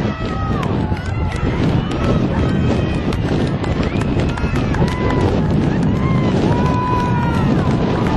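Several people shouting and calling out at a sports game, with drawn-out yells over a steady background noise and scattered sharp knocks.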